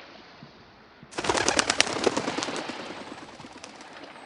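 A flock of birds taking off from power lines: a sudden loud clatter of many wings starting about a second in, a dense rapid flutter that fades over the next two seconds.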